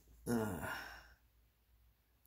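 A man's drawn-out "uh" of hesitation, about a second long, falling slightly in pitch.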